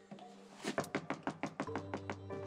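Knuckles knocking on a wooden door: a quick run of knocks starting a little under a second in. Soft background music comes in under the knocking.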